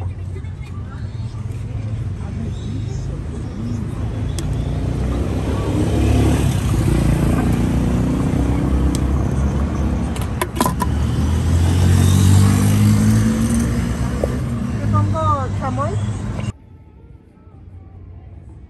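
Street traffic: a motor vehicle's engine rumbling, swelling louder for several seconds in the middle, with voices in the background and a few sharp clicks. The sound drops off abruptly near the end.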